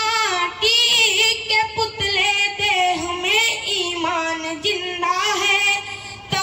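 A single high voice singing a verse in several long, wavering held notes, with no accompaniment: a Rao Bhat bard's traditional sung poem in praise of the Kshatriyas.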